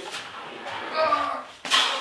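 A man's low, strained grunt from the effort of lifting a tall delta 3D printer frame, held for about half a second around the middle, then a short, loud burst of noise near the end.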